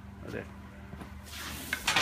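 A short rush of hissing, crackly noise from about a second and a half in, from a foil-covered metal can being handled.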